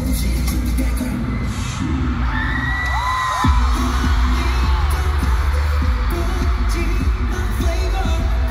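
K-pop music played live over the arena sound system, with singing over a heavy bass beat. About three seconds in, sliding high tones come in and the bass drops out for a moment before the beat returns.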